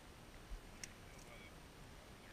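Near silence with a faint steady hiss, broken by a soft low bump about half a second in and a sharp click just after: handling noise as a caught bass and its hooked crankbait are worked over a small boat.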